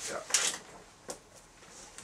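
A paper notebook set down on a metal workbench: a short, loud rustling knock about a third of a second in, then a single small click about a second in as a pen is laid on it.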